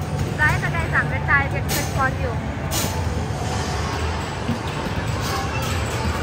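Indoor arcade din at an arcade basketball machine: a steady low rumble with high-pitched voices in the first two seconds and two sharp knocks, about two and three seconds in, as basketballs are shot.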